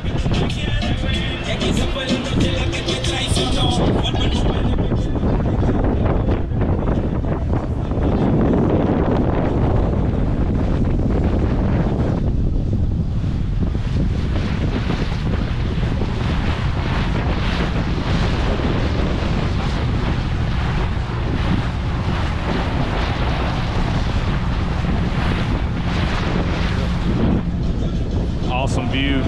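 Wind buffeting the microphone on the deck of a sailing ship under way, over the steady rush of water along the hull.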